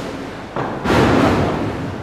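A swell of rushing noise with no tone to it, building from about half a second in, loudest around the middle, then easing off.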